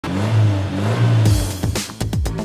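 Title-sequence audio for a car programme: a car engine revving sound effect mixed with electronic music, with a rushing whoosh about a second and a quarter in and falling-pitch thuds near the end.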